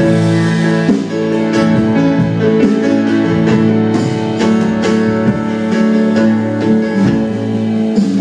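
Small live band playing an instrumental passage between vocal lines: a strummed acoustic guitar over long held keyboard chords, with an electric guitar.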